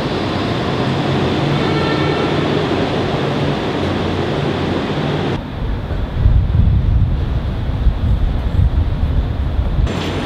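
Steady outdoor city noise, a hum of traffic. About five seconds in it changes abruptly to a deeper, uneven low rumble.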